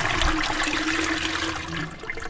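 A steady rushing, water-like noise with a low steady hum under it, easing off a little near the end.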